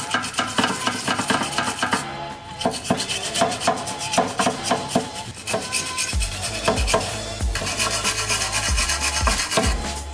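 Hand-held steel wire brush scrubbing rapidly back and forth over the dirty, rusty mounting point of a car's front suspension arm, cleaning it before it is sprayed with WD-40. Background music plays underneath, with a bass beat joining about six seconds in.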